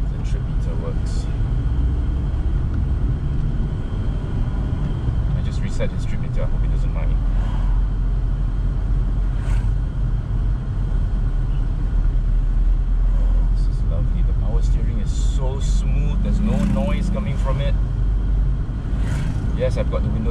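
Cabin noise of a 1989 Toyota Corona GLi on the move: a steady low rumble from the road and its 2.0-litre 3S-FE four-cylinder engine, with a few short clicks and knocks along the way.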